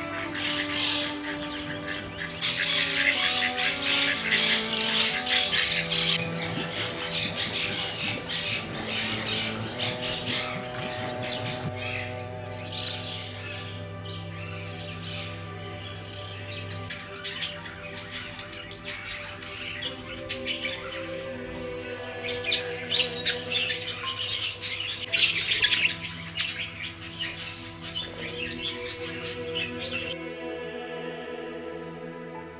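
Background music of sustained, held notes, with birds chirping and squawking over it. The bird chatter is loudest from about two to six seconds in and again near the end.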